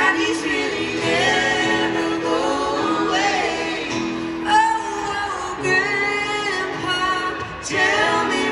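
Live country music heard from far back in a concert crowd through the venue's PA: several voices, women's and a man's, sing together in held, wavering notes over a steady low sustained note.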